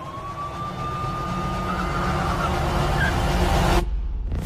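A police siren tone glides up and holds, fading out about halfway through, over a low drone that swells steadily louder and then cuts off abruptly just before the end.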